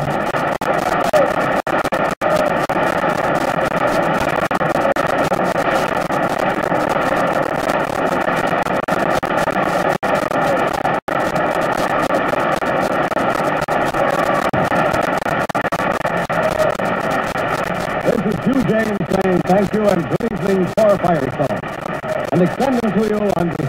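Steady noise from an old broadcast recording, broken by a few split-second dropouts, with an indistinct voice coming in about eighteen seconds in.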